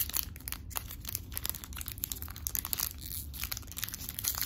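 Foil wrapper of a Pokémon TCG Astral Radiance booster pack crinkling in the hands as it is worked open, a dense run of small irregular crackles.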